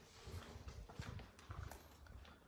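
Faint footsteps walking across a tiled floor, dull thuds about two a second.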